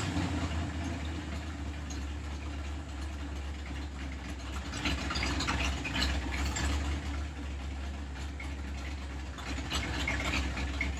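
Chevrolet 327 Turbo-Fire small-block V8 idling steadily while the idle mixture on its Edelbrock four-barrel carburetor is being adjusted.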